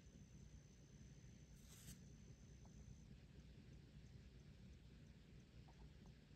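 Near silence: room tone, with a faint steady high tone that stops about halfway through.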